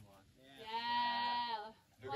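One long, drawn-out vocal call from a person, held at a nearly steady pitch for about a second with a slight waver, starting about half a second in.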